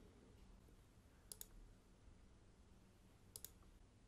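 Near silence with faint computer mouse clicks: a quick pair about a second and a half in and another near the end.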